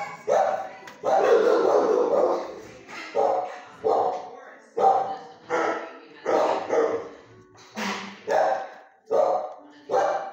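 A dog barking repeatedly, a bark roughly every second, with one longer drawn-out bark near the start; each bark rings on briefly in a hard-walled kennel room.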